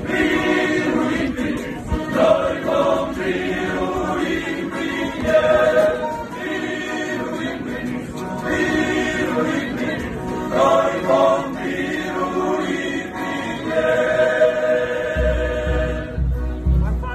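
A choir singing, in phrases with long held notes, as a religious-sounding soundtrack. A low rumble comes in near the end.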